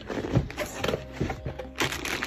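Cardboard box flaps being opened and the packing inside handled, with short knocks and rustles and a louder rustle near the end, over soft background music.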